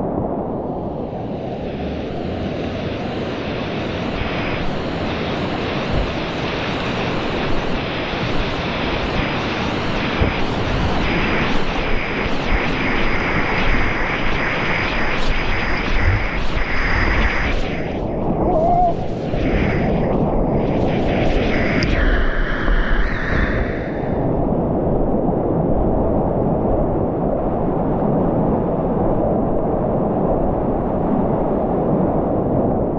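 Loud, continuous rush and splash of whitewater rapids around a kayak, heard close from the boat as waves break over the bow. The hiss of the water thins out over the last few seconds.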